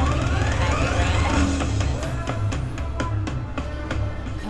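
Video slot machine's bonus-round sound effects: a rising electronic sweep that climbs in pitch over about a second and a half, followed by a quick run of clicks in the second half, over the game's steady low bass music.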